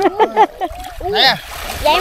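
Water splashing as a cast net full of fish is gathered up and dragged through shallow lake water by two men wading, with short spoken exclamations over it.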